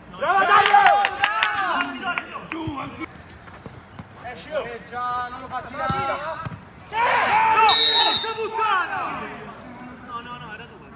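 Men shouting on a five-a-side football pitch, with several sharp knocks of the ball being struck in the first couple of seconds. A brief high referee's whistle sounds a little before the eight-second mark amid more shouting.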